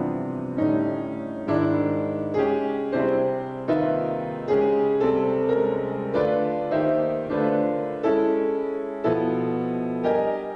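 Solo grand piano playing a slow piece, a new chord struck a little more often than once a second and left to ring as it fades.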